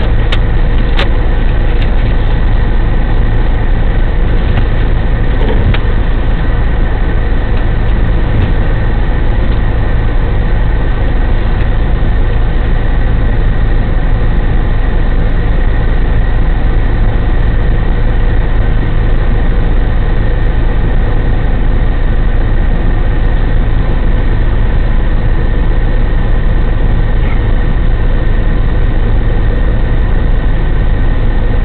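Fire engine's diesel engine running steadily at a constant loud hum, driving its pump to supply the attack hose line on the fire.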